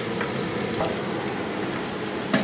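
Hot oil sizzling steadily in a frying pan on the stove, with a couple of faint light clicks.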